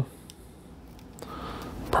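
Faint rustle of loose perlite granules being handled by hand, with a couple of soft ticks early on, over quiet room tone.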